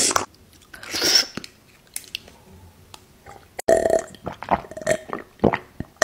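Close-miked ASMR mouth sounds of eating juicy cherries: two breathy slurps in the first second or so, then from a little past the middle a run of wet chewing with quick smacks and clicks.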